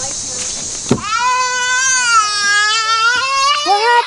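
A young child crying out in pain in one long wail, starting just after a thump about a second in. He has been hurt coming down a sun-heated playground slide, which the parents think burned him.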